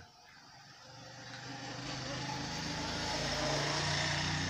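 A motor vehicle running in the background: a steady engine rumble with noise, swelling over the first two seconds and then holding steady.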